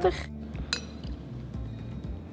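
One light, ringing clink of a metal jigger against a stemmed glass, over soft background music.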